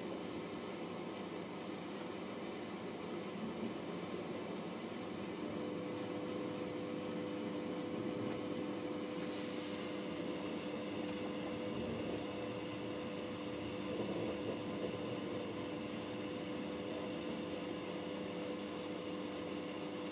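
Steady running noise inside a moving passenger train carriage, a rolling rumble and hiss. A steady two-note hum comes in about five seconds in, and a brief hiss sounds near the middle.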